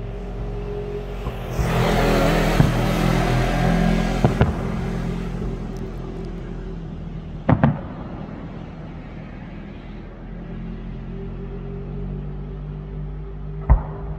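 Aerial fireworks going off: a few seconds of dense hissing crackle starting about a second and a half in, then sharp bangs, the loudest about seven and a half seconds in and a close pair at the very end. A steady low hum runs underneath.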